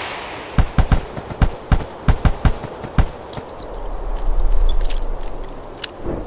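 Sound effects for an animated logo intro: a quick, uneven run of about ten sharp hits, then a swelling rush of noise that rises and fades away.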